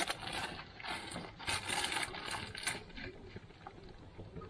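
A sharp click, then irregular rattling and scraping from a small plastic seasoning container and cookware being handled at the hearth; the scraping is loudest a little after the middle and dies down near the end.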